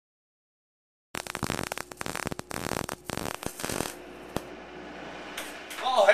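Electric welding arc crackling and sputtering for about three seconds, then cutting off, leaving faint steady background noise and a single click.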